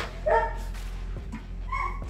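A dog barking twice, one loud bark just after the start and a shorter one near the end, over a steady low hum.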